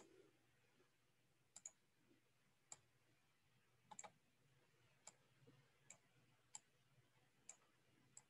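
Faint computer mouse clicks, about eight of them at irregular intervals roughly a second apart, some in quick pairs, over near-silent room tone.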